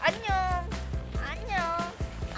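Two high, meow-like calls, each sliding down in pitch, over background music.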